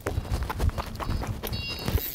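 Carp rod bite alarm giving a few quick high beeps as a fish takes the bait, among rapid scuffing, knocking and rustling as the angler scrambles up and out of the brolly to the rod.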